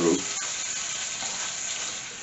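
Curried chickpeas sizzling in a hot skillet: a steady hiss of steam from the little water just added to heat them through, while a spatula stirs them.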